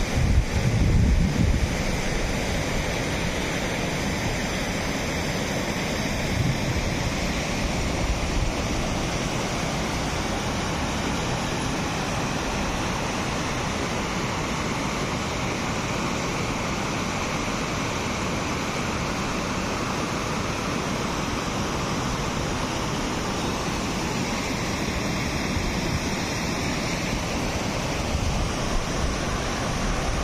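Water rushing steadily out through the sluice openings of a concrete weir and churning white over the rocks below. Wind rumbles on the microphone in the first couple of seconds.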